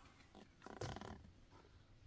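Near silence: room tone, with one faint, brief soft noise about a second in.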